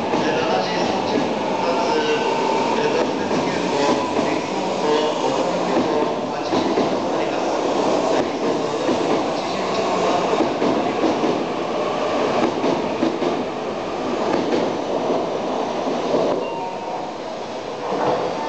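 E4 series double-decker Shinkansen departing, its cars rolling past with a steady rumble of wheels and running gear and scattered clicks from the rails. The sound eases off slightly as the last cars pull away near the end.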